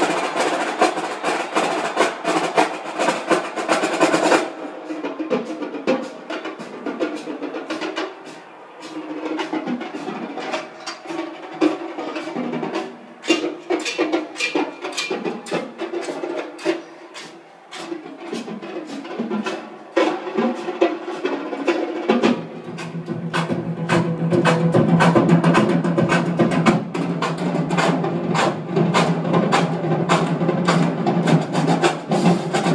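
Marching band drumline played on the TV through the home-theatre receiver and speakers: rapid snare drum strokes and rolls with bass drum hits. After about twenty seconds a low held note joins the drumming.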